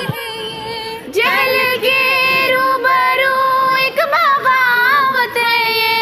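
A song sung by high voices over music, with long held notes that waver in pitch; it is softer for the first second, then comes in fuller.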